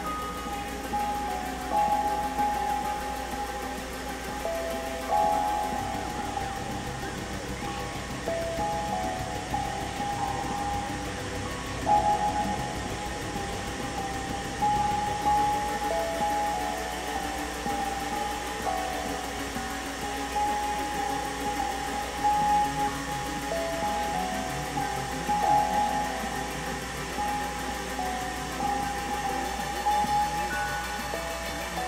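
Experimental electronic synthesizer music: a high tone steps back and forth between a few pitches over a steady low drone.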